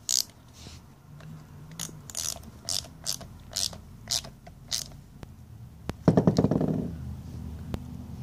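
Steel socket on an extension turning the small jam nut on the full-fuel adjustment screw of a Bosch MW diesel injection pump: metal clicks and scrapes about twice a second, then a quicker, louder rattling run about six seconds in, as the nut is screwed back in.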